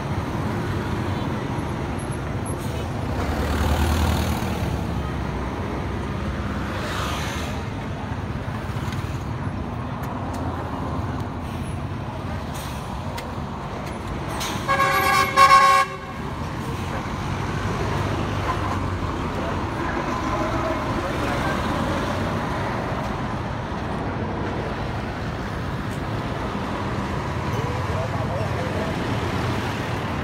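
Road traffic running steadily, with one loud vehicle horn honk of about a second halfway through.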